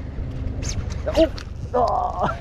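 A man's voice shouting an excited "Oh! Oh!" near the end, with brief vocal sounds before it, over a steady low rumble.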